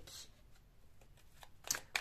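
A deck of Lenormand cards being picked up and handled, soft rustling with a few sharp card clicks near the end.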